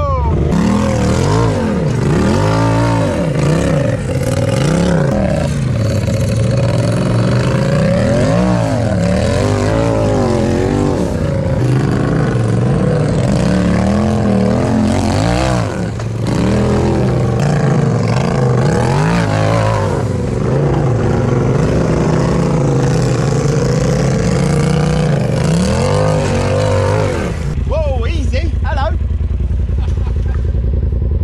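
Side-by-side UTV engine revving up and down over and over under throttle, crawling up rock ledges; the revving stops near the end.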